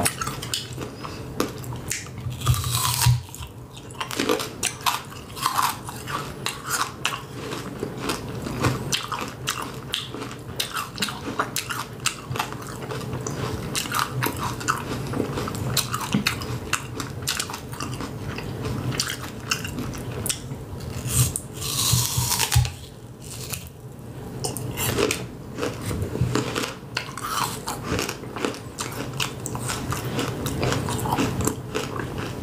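Close-miked chewing and crunching of a candy apple, the red hard-candy coating and the apple flesh beneath it, with dense crackles and clicks throughout and two louder moments: one about three seconds in and one about two-thirds of the way through.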